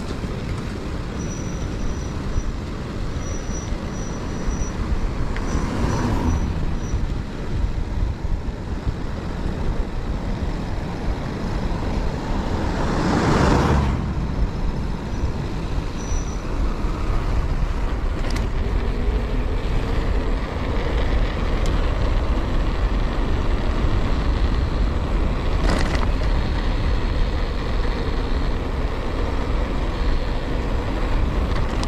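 A Toyota Hilux pickup driving slowly close ahead, its engine and tyres running on the wet road, mixed with steady wind rumble on the camera of a moving bicycle. The noise swells to its loudest about halfway through.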